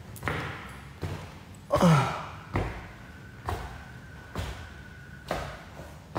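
Footsteps on a tiled floor, a little under one step a second. About two seconds in comes a louder short sound that falls in pitch.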